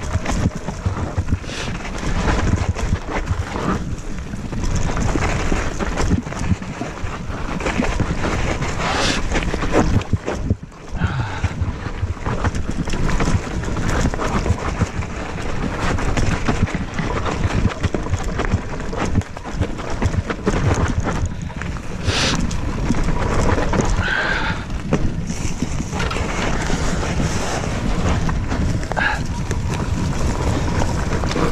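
E-mountain bike riding downhill on a forest single trail: a continuous rattling of the bike and its tyres over dirt, roots and leaves, with many small knocks and jolts and a brief lull about ten seconds in.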